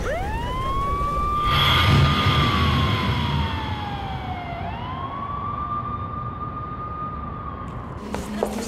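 An emergency vehicle siren wailing: it sweeps quickly up, holds high, slides slowly down and sweeps back up again. A rumbling noise joins it about a second and a half in, and this is the loudest part.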